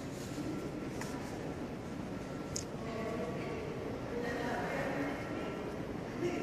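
Indistinct background voices of people talking over a steady room noise, with a brief sharp click about two and a half seconds in.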